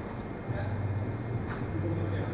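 A tennis ball struck by a racket in a practice rally, one sharp strike about one and a half seconds in, over a steady low hum and faint voices.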